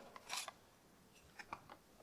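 Faint rustle and light ticks of a cardboard filter box being opened and a new power steering filter element slid out of it by hand: a short rustle early, then a few small ticks about a second and a half in.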